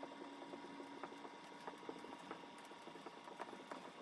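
Dry-erase marker writing on a whiteboard: faint, irregular taps and squeaks of the tip as letters are formed.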